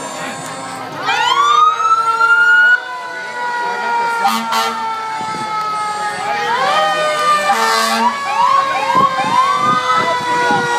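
Fire vehicle sirens. About a second in, a loud siren whoop rises in pitch and cuts off sharply near three seconds, over a long siren tone that slowly falls in pitch. Near the end comes a quick run of short rising chirps.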